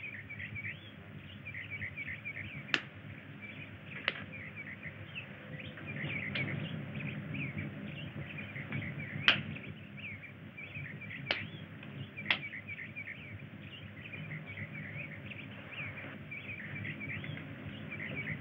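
Birds chirping steadily over a low hum on an old film soundtrack that carries nothing above about 4 kHz, with five sharp clicks scattered through, the loudest about nine seconds in.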